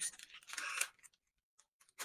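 Scissors cutting through pattern paper, a crisp snipping and crinkling that stops about a second in.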